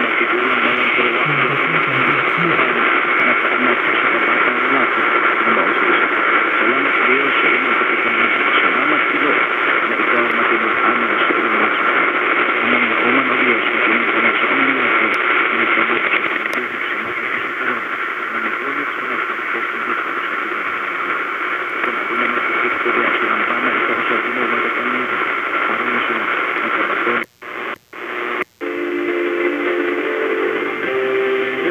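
Distant AM broadcast station received at night on a portable radio: a faint, fading voice buried in heavy static, with steady whistling tones over it. Near the end the sound cuts out three times in quick succession as the receiver is stepped to another frequency, and a different station's signal comes up.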